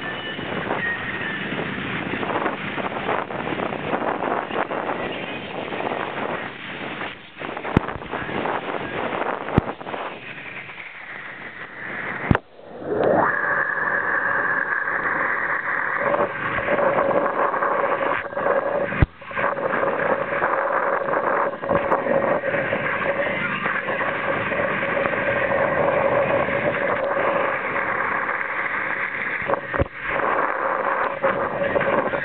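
Wind buffeting the microphone over the rush of spraying water as a wakeboarder is towed behind a motorboat, with occasional knocks. About halfway through, a whine rises and then holds steady to the end.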